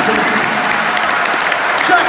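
Large concert-hall audience applauding steadily, with voices and shouts over the clapping.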